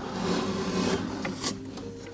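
A scraping, rubbing noise, strongest in the first second and fading after, over soft background music with held notes.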